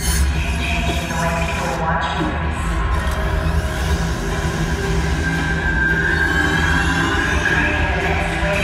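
Soundtrack of a promotional sizzle reel played through cinema speakers: music over a heavy low rumble, with a rising high tone in the second half.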